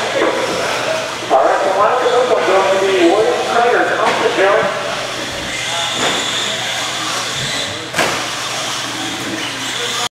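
Indistinct voices of several people talking in a large room, with a single sharp knock about eight seconds in.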